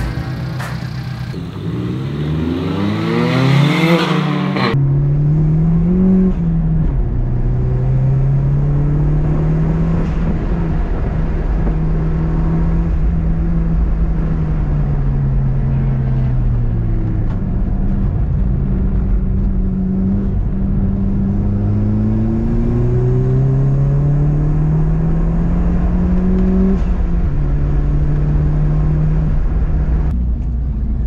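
Honda Civic Si's turbocharged 1.5-litre four-cylinder, running a 27Won W2 turbo, pulling hard on track, heard from inside the cabin. The engine note climbs slowly and falls away several times, with a sharp drop about 27 seconds in. It is preceded by a few seconds of a rising sweep with a hiss.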